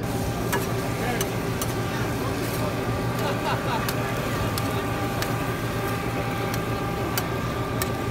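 Taco-truck kitchen ambience: a steady mechanical hum holding several fixed tones, with irregular sharp clicks and voices in the background.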